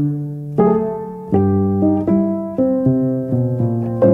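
Solo piano playing slow, held chords, each struck and left to ring and fade before the next; the chords come quicker near the end.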